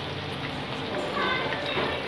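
Hot ghee sizzling steadily in a pot as sliced coconut, raisins and almonds fry in it.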